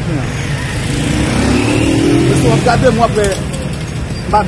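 A motor vehicle engine running close by, its pitch rising for about a second as it speeds up, with people's voices over it.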